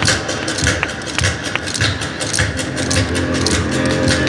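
Yosakoi dance music with many sharp wooden clacks from naruko clappers, struck in quick rhythm. Sustained pitched tones come in during the second half.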